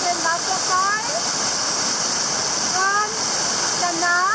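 Waterfall cascading over rocks close by: a steady rush of water. Voices call out briefly over it, about a second in and again near three seconds.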